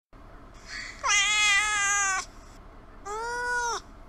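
A cat meowing twice: a long, fairly level meow lasting about a second, then a shorter meow that rises and falls.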